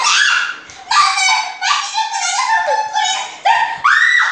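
Two girls' high-pitched wordless cries, a string of about six short loud calls that slide up and down in pitch.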